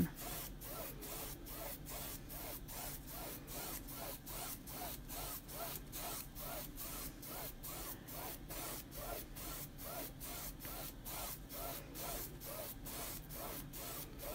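Paintbrush bristles scrubbing back and forth across a stretched canvas while blending paint, a faint scratchy swish repeating steadily at about three strokes a second.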